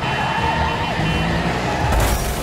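Cartoon police siren sounding over background music, with a sudden crash of noise near the end.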